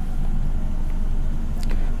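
A steady low-pitched background hum with no clear events.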